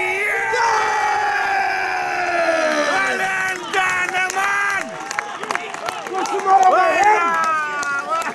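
Football spectators cheering and yelling just after a goal, led by one man's long drawn-out shout that falls slowly in pitch over about four seconds, with more shouts from several voices near the end.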